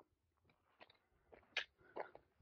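Near silence with a few faint, short clicks.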